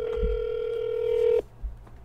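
Ringback tone from a phone call on speakerphone: one steady electronic tone lasting about a second and a half that cuts off suddenly, the line ringing out on an outgoing call.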